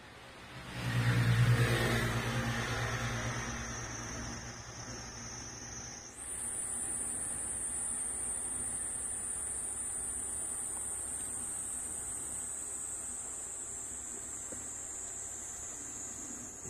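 A car passing by, swelling about a second in and fading away over the next few seconds. From about six seconds in, a steady high-pitched insect buzz takes over.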